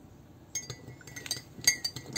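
A metal spoon clinking against glassware, several light clinks starting about half a second in, with a brief ringing of the glass.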